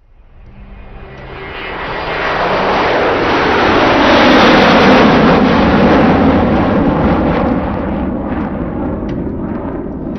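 An aircraft passing overhead: a rushing noise that swells up from silence over about four seconds, peaks near the middle, then slowly dies away.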